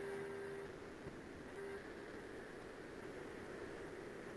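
Faint steady hiss of an open microphone's background noise, with a faint tone for a moment in the first second.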